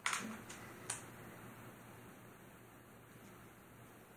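Hands handling small objects on a workbench: a short scrape or knock, then two light clicks, all within the first second, followed by faint room tone.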